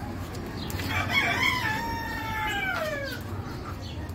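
A rooster crowing once, starting about a second in: a short rising opening that breaks into a long note falling in pitch, about two seconds in all.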